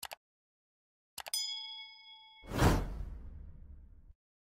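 Animated-subscribe-button sound effects: a quick double mouse click, then a few fast clicks and a bell-like ding that rings for about a second, followed by a loud whoosh that swells and fades away.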